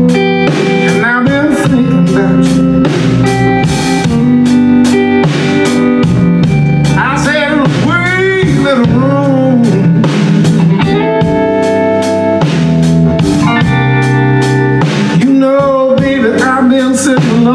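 Live electric blues band: electric guitar, bass and drum kit playing a blues, with a man singing into the microphone.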